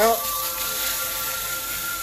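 Steady hiss of 200-grit abrasive sanding a spinning red heart cedar workpiece on a Delta Midi wood lathe, with the lathe motor's thin steady whine underneath.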